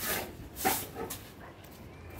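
A broom scrubbing wet cement slurry on a concrete roof: three quick swishing strokes about half a second apart, bunched in the first second or so.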